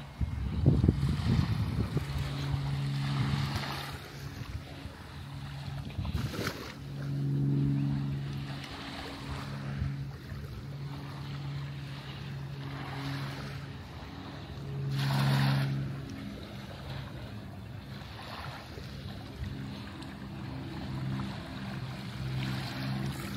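Small waves lapping and washing up the sand, in soft swells every few seconds with the biggest about 15 s in. Under them runs a steady low engine hum, like a distant motorboat. A couple of rumbling gusts of wind hit the microphone near the start and again about six seconds in.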